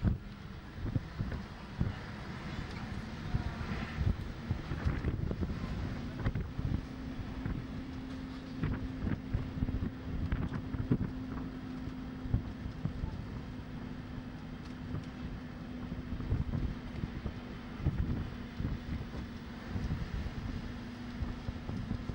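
Wind buffeting the camcorder microphone on the open top deck of a moving bus, over the steady drone of the bus engine. The engine note steps up slightly about six seconds in.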